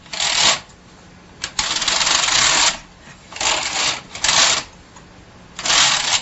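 Bond hand knitting machine's carriage pushed back and forth across the needle bed, knitting rows: a rasping mechanical clatter of the needles, four passes about a second long with short pauses between.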